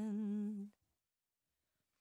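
A person's voice holding one hummed note with a slight waver, which cuts off abruptly under a second in and leaves dead silence for the rest.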